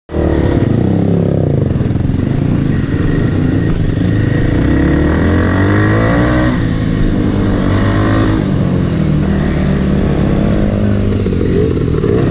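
Dirt bike engine, chiefly the ridden Kawasaki KLX300R's single-cylinder four-stroke, running loud and continuously on a rough trail, its pitch rising and falling several times as the throttle is opened and closed.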